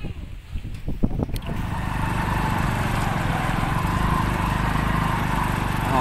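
A small motorcycle engine running steadily while riding through flood water, with the water rushing around the wheels; it comes in about two seconds in, after a few faint knocks.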